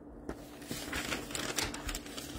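Paper sheets being handled, an irregular run of small crackles and ticks.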